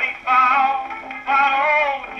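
A dance-band record with a vocal, playing acoustically on an Apollo Super XII portable gramophone. The Goodson record is crackly and worn, and the sound is thin and narrow, with no deep bass or high treble.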